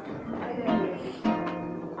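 Flamenco acoustic guitar strumming a few chords in rhythm.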